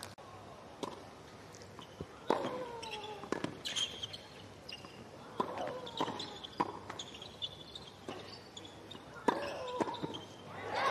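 Tennis ball being struck by rackets and bouncing on a hard court during a doubles rally: a series of sharp pops, some close together, some followed by a short falling tone.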